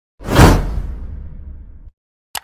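Intro whoosh sound effect that swells quickly, then fades into a low rumble and cuts off abruptly near the end.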